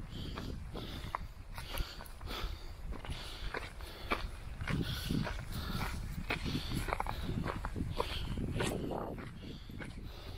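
Heavy, breathy panting of a person climbing a steep dirt trail, with footsteps crunching on dirt and gravel and a steady low rumble.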